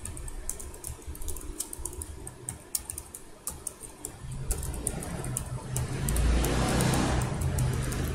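Irregular keystrokes on a computer keyboard as a line of code is typed. In the second half a louder low rumble swells up and fades out near the end.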